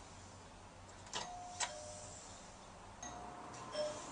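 A doorbell chime rung twice, each time a two-note ding-dong, higher note then lower, opened by the click of the button press.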